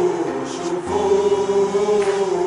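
Stadium crowd of football supporters singing a chant in unison, long held notes with a new phrase starting about a second in.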